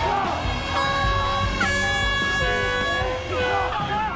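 Street protest crowd with an air horn sounding one steady, loud blast of about two seconds, starting about a second in, over background music.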